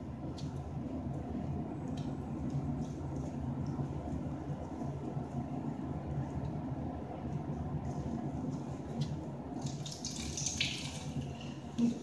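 Water from a bathroom basin tap running steadily into the sink, with a few small clicks as a water-filled disposable glove is handled and tied off. A brighter hiss comes in about two seconds before the end.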